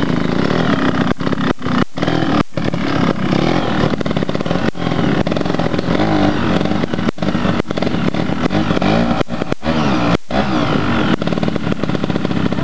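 Trials motorcycle engine revving up and down in short bursts of throttle as the bike climbs slowly over rough ground, the pitch rising and falling throughout, with several brief drops in the sound.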